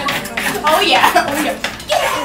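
Forks clinking and tapping on plates while several girls chatter and eat at a table.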